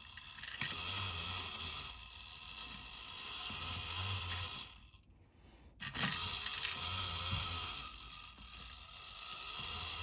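Clockwork spring motor of a 1950s Alps "Mr. Robot The Mechanical Brain" tin wind-up robot, whirring as it walks. The whirr stops for about a second near the middle, then starts again.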